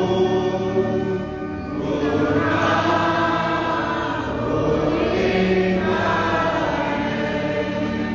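Congregation singing a slow hymn together, long held notes in phrases of a couple of seconds each.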